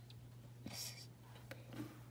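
A short whispered sound about a second in, followed by a light click, over a faint steady low hum.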